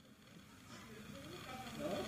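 Sound fading in from silence: a faint hiss of room or ambient noise, then voices of people talking that grow louder toward the end.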